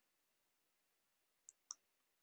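Near silence, broken near the end by two short computer-mouse clicks about a fifth of a second apart.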